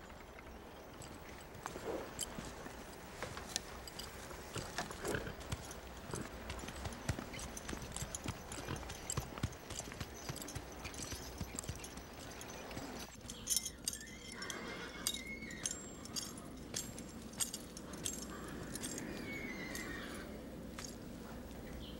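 Horse hooves clip-clopping at a walk on a packed-dirt street, in irregular steps throughout.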